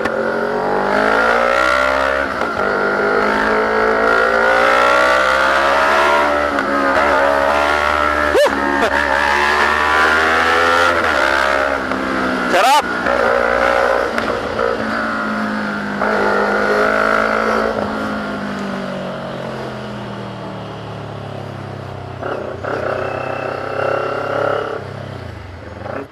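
CFMoto 400NK parallel-twin motorcycle engine under way in traffic, its note rising and falling with throttle and speed. Two sharp clicks come about 8 and 13 seconds in, and the engine eases off for a stretch near the end.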